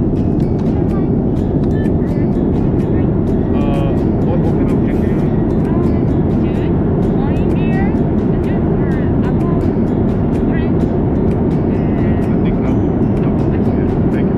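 Airliner cabin noise in flight: a loud, steady low rush that holds unchanged throughout. Faint voices and quiet background music sit underneath it.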